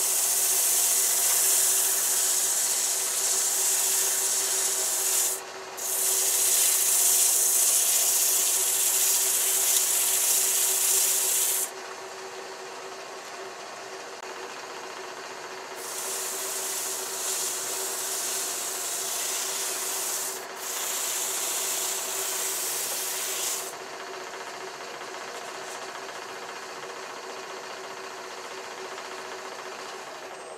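120-grit foam-backed sandpaper sanding a wooden ball spinning on a wood lathe. The sanding comes in long loud stretches, with a short break about five seconds in, a quieter spell from about twelve to sixteen seconds, and quieter again after about twenty-four seconds. Under it runs the lathe's steady hum.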